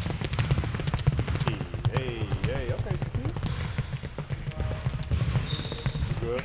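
A basketball dribbled rapidly on a hardwood gym floor, many quick bounces in a row, with a brief high squeak near the middle.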